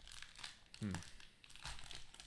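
Trading card pack wrapper crinkling and tearing as it is pulled open by hand, a scatter of short crackles.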